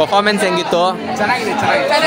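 Several people chattering close by, their voices overlapping.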